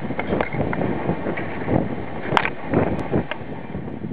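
Wind buffeting a handheld camera's microphone, an uneven, gusting rumble. A few short clicks sound in the second half.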